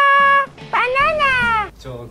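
A held brass-like music note stops about half a second in. It is followed by one drawn-out meow, rising then falling in pitch, lasting about a second.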